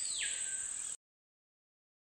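Rainforest insects: a steady high-pitched insect drone, with a second, lower sound swelling and fading over it. The sound cuts off abruptly about a second in, followed by silence.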